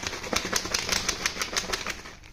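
Plastic bottle packed with fruit peels, jaggery and water shaken hard by hand, a fast, even rattle of sloshing and crackling plastic. It is the first shake that mixes a freshly filled fermentation batch.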